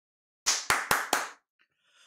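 Four quick hand claps, about a quarter second apart.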